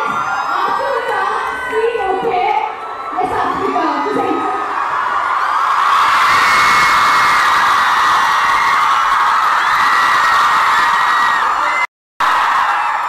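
Crowd of college students cheering and screaming, with mixed shouting voices at first, then swelling about halfway through into one loud, sustained, high-pitched scream that holds until it cuts off abruptly at an edit.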